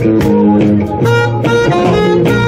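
Live jazz-reggae band playing, a saxophone holding and changing notes over electric guitar and bass guitar.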